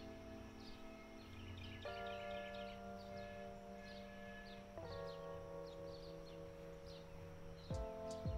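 Soft background music of held chords that change about every three seconds, with small birds chirping faintly throughout.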